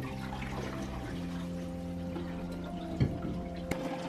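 Fixer being poured from a measuring jug into a plastic film developing tank, over a steady low hum. Two short knocks come in the last second.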